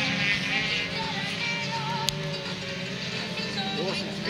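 Racing cars' engines running at a distance on a dirt autocross track, a steady low drone, mixed with music playing over the track's loudspeakers. A brief sharp click comes about two seconds in.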